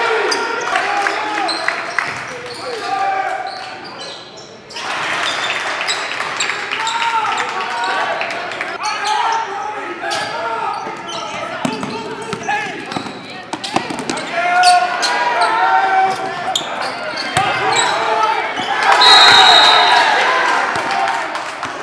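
Basketball dribbled and bouncing on a hardwood gym floor during play, with players and spectators shouting and calling out. The sound echoes in a large hall, and the voices grow loudest near the end.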